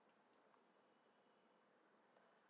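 Near silence with a single faint computer mouse click about a third of a second in.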